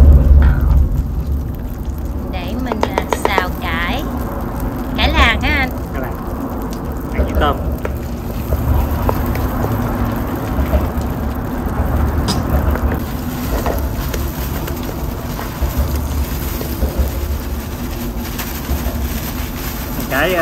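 Garlic frying in lard in a wok, sizzling while a wooden spatula stirs it, over a steady low rumble. Voices talk faintly in the background.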